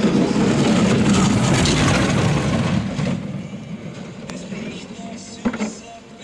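A bobsleigh running past at speed on the ice track: a loud rushing rumble of its runners on the ice for about three seconds as it passes close, then fading as it goes on down the track.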